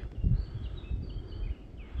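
Faint bird calls, a few thin high notes, over a steady low rumble of outdoor noise.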